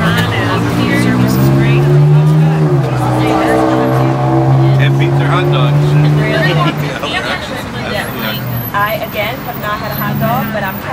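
A motor vehicle's engine running close by, its pitch dropping once about three seconds in, then fading away about seven seconds in, with people talking over it.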